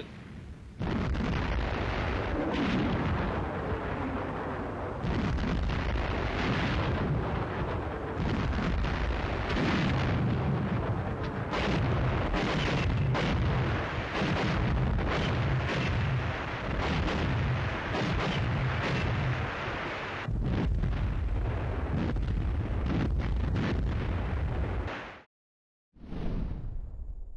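Artillery barrage: shell bursts and gunfire follow one another densely, with a deep rumble underneath. The sound cuts off abruptly about a second before the end.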